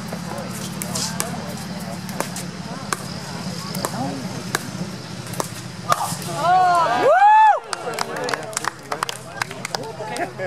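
Pickleball rally: a quick series of sharp pops as paddles strike the plastic ball and the ball bounces on the hard court. About seven seconds in comes the loudest sound, a drawn-out vocal cry that rises and falls in pitch as the rally ends.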